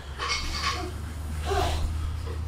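Light metallic scraping and clicking of a scope probe being worked against the terminals of a wiring connector, over a steady low hum.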